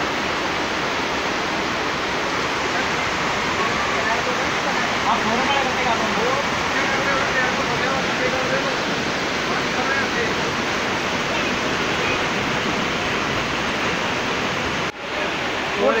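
Heavy rain pouring down and floodwater rushing along a street, a loud, steady rush of water. It cuts out briefly about a second before the end.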